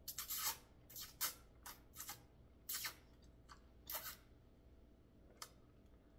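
A person slurping noodles: a run of short, hissing slurps in quick succession over the first four seconds, then a single small click near the end.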